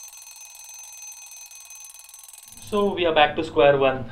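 An alarm clock ringing with a fast, rapidly pulsing ring on several fixed high tones. It stops about two and a half seconds in, when a man starts talking.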